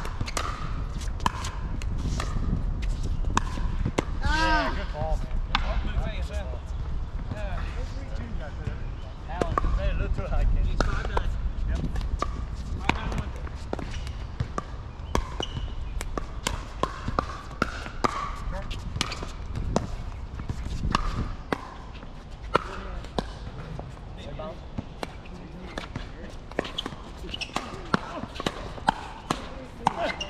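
Pickleball rally: sharp pocks of paddles striking the hollow plastic ball and the ball bouncing on the hard court, in quick irregular succession throughout, with a few brief shouts from players.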